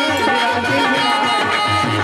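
Live bhajan folk music: a hand drum plays a steady, repeating beat under a held, wavering melody line.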